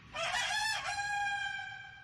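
A rooster crowing once: a short wavering start, then one long held note that fades away near the end.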